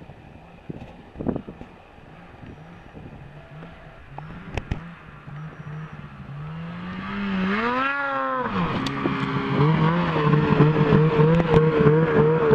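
Ski-Doo snowmobile engine, its drone growing steadily louder as the sled comes nearer across the snow. About eight seconds in it revs up and back down once, then runs on at a louder, steady pitch.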